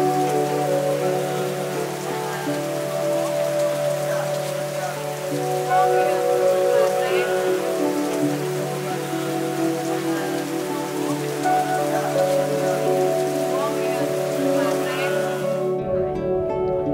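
Steady heavy rain falling, an even hiss that cuts off just before the end, over soft sustained background music.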